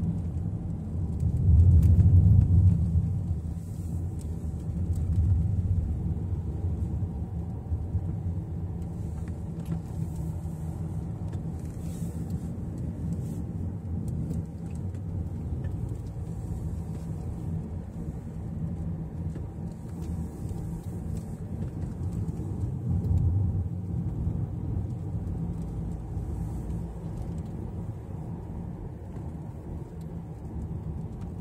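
Car driving, heard from inside the cabin: a steady low rumble of engine and road noise. It swells louder briefly about two seconds in, and again some twenty seconds later.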